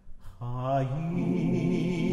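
Cantor and men's choir singing a liturgical chant: after a near-quiet moment, the voices come in about half a second in, one voice sweeping upward before they settle into a held chord.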